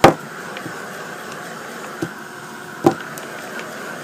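A small canvas being handled and turned on a tabletop, with two short knocks, one at the start and one about three seconds in, as it is set down, over a steady hum.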